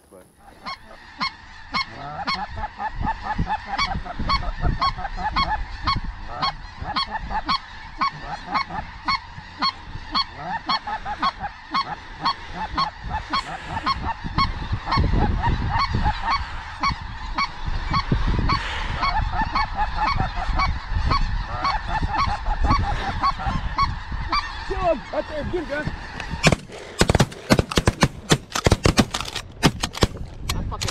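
A large flock of snow geese calling overhead, a dense, unbroken chorus of short high honks. About four seconds before the end a rapid volley of shotgun shots breaks out over the calls.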